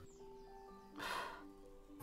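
Faint background music of held, sustained tones, with a short breath into a microphone about a second in.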